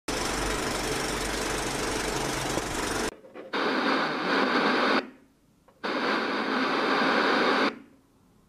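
Intro sound effects: about three seconds of noisy hiss with a low hum under a film-countdown graphic, then two bursts of television static hiss, each about a second and a half long, with a short near-silent gap between them.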